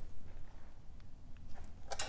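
Faint handling sounds from a hand at a valve cover bolt, with a few small clicks near the end, over a low steady hum.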